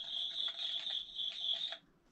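A toy campfire's sound effect through its small speaker: scattered crackles over a steady high tone, cutting off shortly before the end.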